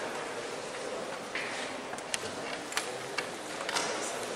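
Marker pen drawing on a whiteboard: a scratchy stroke and several short sharp taps over a steady background hiss.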